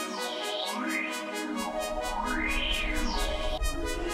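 Electronic background music: synthesizer sweeps that rise and fall over a steady pulsing beat, with a bass line coming in about a second and a half in.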